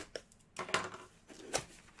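A small white cardboard box being handled and opened: a few light knocks and clicks on the box, with short scraping rustles as its lid flap is lifted open.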